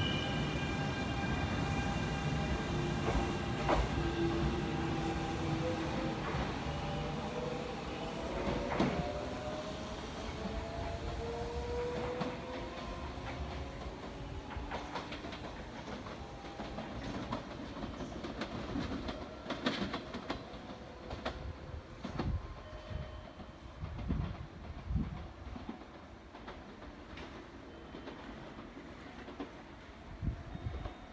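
Kintetsu 6400-series electric train pulling out and accelerating away. Its motor whine rises in pitch over the first dozen seconds, then the wheels click over rail joints as the train fades into the distance.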